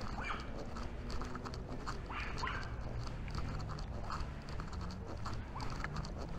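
A few short, rising, high-pitched animal calls over walking footsteps and a steady low rumble.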